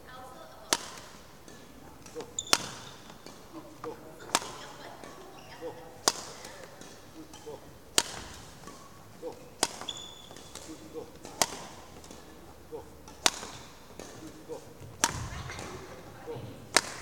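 Badminton racket striking shuttlecocks in a steady feeding drill: a sharp crack about every two seconds, ringing briefly in a large hall, with fainter knocks between them.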